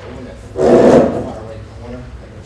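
Faint speech in a meeting room, broken just over half a second in by a brief loud noise close to the microphone lasting about half a second.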